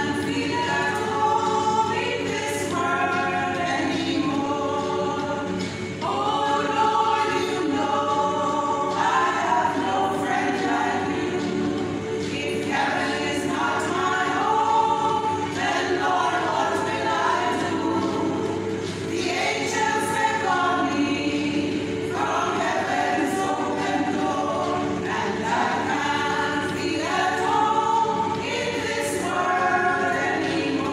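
A women's church choir singing together from their music books, in phrases of several seconds with short breaks between.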